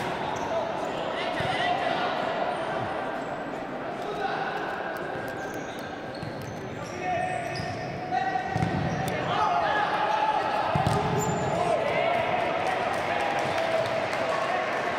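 Futsal ball being kicked and bouncing on a wooden indoor court, with players calling out, all echoing in a large sports hall.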